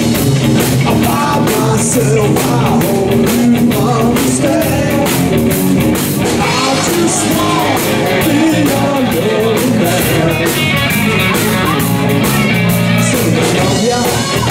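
Live blues-rock band playing: electric guitar, electric bass and drum kit, with a man singing.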